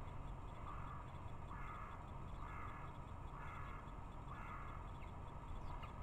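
Carrion crow cawing off camera: five calls about a second apart.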